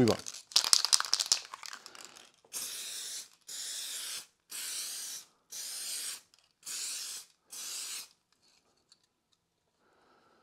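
Aerosol can of crackle-effect lacquer spraying in six short hissing bursts, each a little over half a second, with brief pauses between. Before the first burst there is about a second and a half of sharp rattling.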